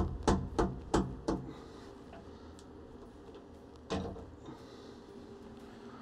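Sharp metal clicks and knocks as the MicroARC 4 rotary table's chuck is loosened and the machined aluminum part is taken out. There are about five knocks in the first second and a half and one more about four seconds in.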